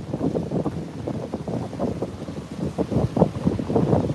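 Wind buffeting the phone's microphone, a low irregular rumble in gusts.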